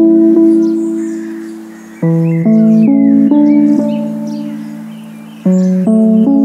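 Slow instrumental relaxation music: a melodic instrument plays rising phrases of notes that ring on and fade together. A new phrase begins about two seconds in and again near the end.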